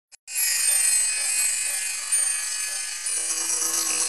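Bright, shimmering synthesized intro sound made of many held high tones, with lower held tones joining about three seconds in. It accompanies the animated title of a video-editor slideshow template.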